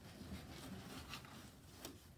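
Faint rustling and scraping of a cardboard gift box sliding against a shipping carton as it is lifted out, with a couple of light ticks.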